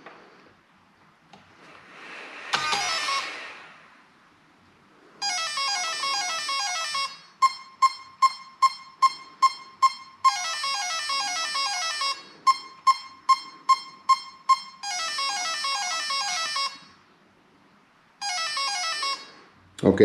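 Electronic speed controller's calibration tones played through the brushless motor: blocks of melodic beep sequences alternating with runs of short single beeps about three a second, as the speed controller is recalibrated to the transmitter. A brief rising rush of noise comes about two seconds in.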